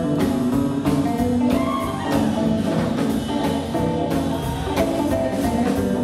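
Live rockabilly band playing: slapped upright double bass, electric and acoustic guitars and a drum kit keeping a steady beat.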